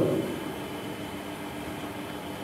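A pause in speech: the reverberation of the last word fades out within about half a second, leaving a steady faint room hiss and hum.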